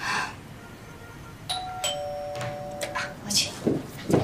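Electronic doorbell chime: two notes, a higher one and then a lower one, starting about a second and a half in and ringing on for over a second. A brief hiss-like noise comes at the very start.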